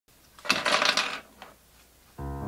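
Small hard plastic film cartridges dropped and clattering onto a tabletop: a quick burst of rattling clicks lasting under a second, followed by a couple of faint ticks as they settle.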